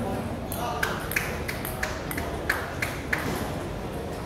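Table tennis rally: the ball clicks sharply off the bats and the table about three times a second, some eight strikes in all, starting about a second in and stopping a little after three seconds when the point ends.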